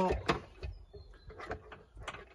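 A few light plastic clicks and knocks as the seatbelt pretensioner's electrical connector is unclipped and pulled apart by hand.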